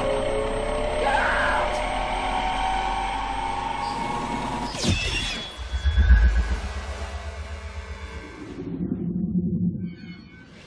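Film sound effects of a laboratory gamma-ray device firing. A machine hum carries a tone that rises slowly over about five seconds. Then comes a sudden blast and a deep rumble, which fades away near the end.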